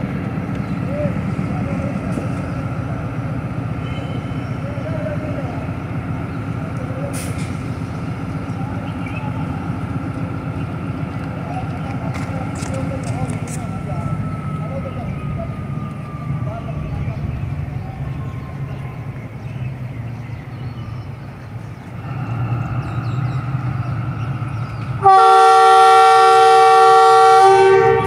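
Pakistan Railways diesel-electric locomotive idling at the platform, its engine note rising about 22 seconds in. Near the end its horn sounds a loud multi-tone chord for about three seconds, the warning that the train is about to pull out.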